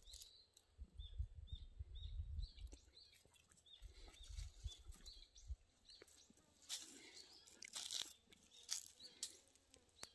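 Quiet outdoor ambience. A short high chirp repeats about twice a second through the first half, with a low rumble twice. Near the end come a few brief scuffs and rustles as a dog paws and tussles with a cat on dry, gravelly ground.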